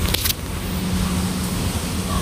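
Steady background noise with a low hum, broken by a quick cluster of sharp clicks just after the start.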